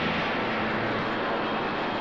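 Aircraft engine noise, a steady even rushing sound that holds level throughout.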